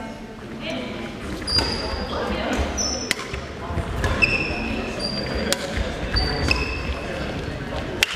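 Badminton doubles rally on a wooden sports-hall court: several sharp racket strikes on the shuttlecock, short high-pitched shoe squeaks on the floor, and thuds of footsteps.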